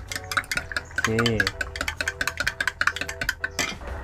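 Metal spoon stirring milk tea in a glass measuring cup, clinking rapidly and repeatedly against the glass as the condensed and evaporated milk are mixed in. Background music plays underneath.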